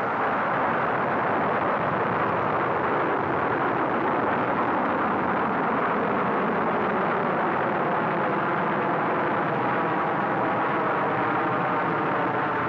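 Titan II rocket at liftoff, its twin-chamber first-stage engine running: a steady, unbroken rush of noise that holds one level throughout.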